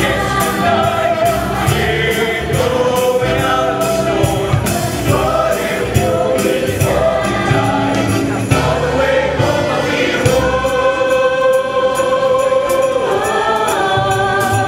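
Mixed show choir singing in close harmony over an accompaniment of bass and steady percussion. In the second half the voices settle into one long held chord.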